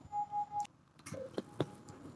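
A faint, steady, mid-pitched electronic beep from operating-theatre equipment, lasting about half a second, followed by two soft clicks.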